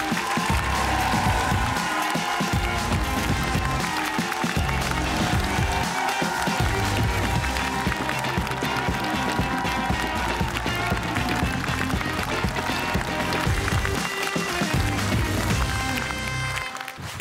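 Upbeat show music with a steady low beat, over a studio audience applauding.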